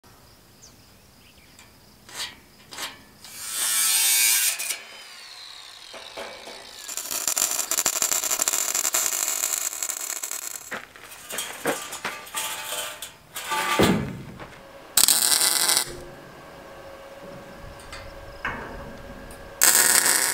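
A run of short metal-fabrication clips on a steel tube rack: sharp knocks of metal, then loud hissing stretches of welding and of a power tool cutting steel with sparks, one of them winding down in pitch.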